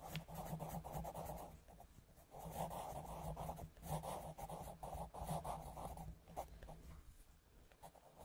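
Coloured pencil scratching on paper in quick back-and-forth shading strokes. It comes in bouts of a second or two with short pauses between, and grows fainter near the end.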